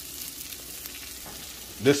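Brussels sprouts frying in bacon fat in a skillet, a steady sizzle.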